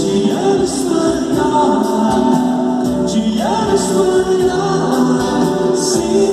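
Live band playing a song in an acoustic arrangement: singing voices over strummed acoustic guitars.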